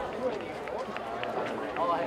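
Several voices of players and spectators talking and calling out across an outdoor sports ground, with no single speaker standing out.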